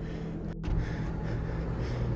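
A person breathing heavily close to a phone's microphone over a steady low hum, with a brief break in the sound about half a second in.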